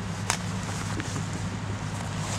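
Steady low mechanical hum of a nearby factory, with two light clicks, one just after the start and another about a second in.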